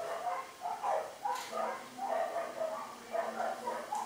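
A fluffy shelter dog whining in a string of short high-pitched whimpers while it nuzzles a person's face.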